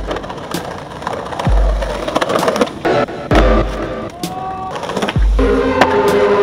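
A skateboard rolling and clacking on an asphalt street, with sharp clicks over the rough noise of the wheels. It is mixed with music that has deep, pitch-dropping bass notes about every two seconds.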